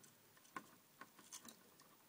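Near silence with a few faint clicks of plastic LEGO pieces being handled and fitted together.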